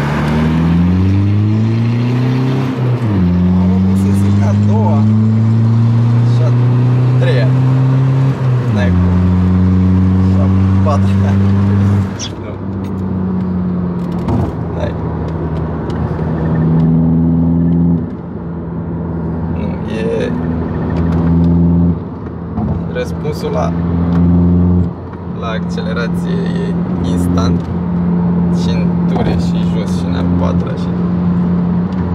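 Volkswagen Passat engine with a freshly remapped ECU, heard from inside the cabin, accelerating hard through the gears. The engine note climbs in pitch and drops at a gearchange about three seconds in, climbs again and drops at a second change near nine seconds, then holds steady at motorway speed, with a few brief lifts off the throttle.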